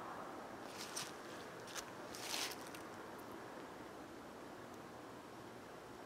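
Faint steady outdoor hiss with a few soft rustles, the longest about two seconds in, as someone moves through grass and brush.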